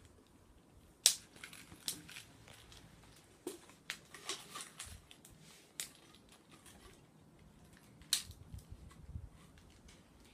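Scattered sharp plastic clicks and rustling from a pencil-shaped plastic stationery case being handled and its cap worked; the sharpest click comes about a second in.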